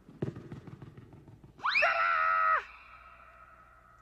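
Comic quick-change sound effects: about a second and a half of low rustling rumble with scattered clicks, then a loud, bright held note about a second long that slides up at its start and leaves a faint ringing tail.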